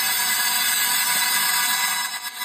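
Dense, steady rattling hiss of a stream of small beads pouring between a glass and a ribbed dish, played backwards.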